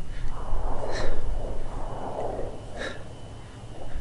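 A man breathing hard in time with bouncing arm-stretch reps: two short, hissy breaths about two seconds apart. Wind rumbles on the microphone and swells in the first half.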